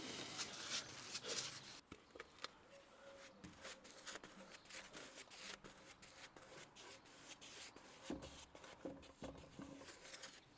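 Faint, irregular scratchy strokes of a paintbrush spreading bitumen paint along treated timber.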